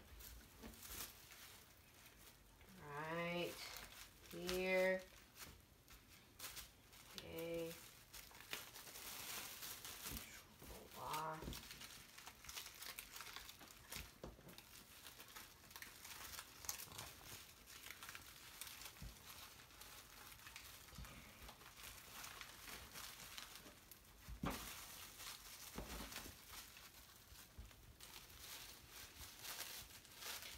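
Faint crinkling and rustling of clear plastic wrap, handled and folded around a sushi roll, with scattered small clicks. A child's voice makes a few short sounds in the first twelve seconds.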